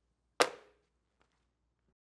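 A single sharp smack about half a second in, ringing briefly before dying away.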